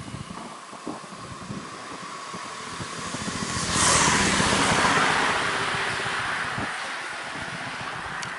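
A road vehicle passing close by: tyre and engine noise builds to a peak about four seconds in and then fades away slowly.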